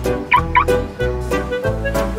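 Two quick chirps from a car alarm as the car is locked with the remote key fob, over background music.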